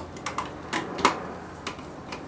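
A handful of light, irregular plastic clicks and taps, about six in under two seconds, as the plastic body of an Oase BioPlus Thermo 100 internal aquarium filter and its heater cable are handled.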